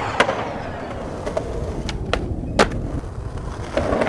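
Skateboard wheels rolling on pavement, with a handful of sharp clacks from the board striking the ground or an obstacle. The loudest clack comes about two and a half seconds in.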